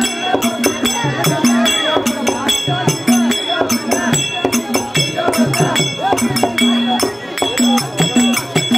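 Therukoothu stage music: a drum and small hand cymbals played in a fast, even rhythm, with a wavering melody line weaving over the beat.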